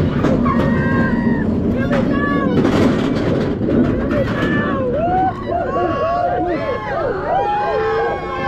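Several roller-coaster riders' voices overlapping in excited shouts and shrieks, thicker in the second half as the dive coaster's train hangs over the edge of its vertical drop. Under them runs a steady low rumble of the train and wind, with a short clatter about three seconds in.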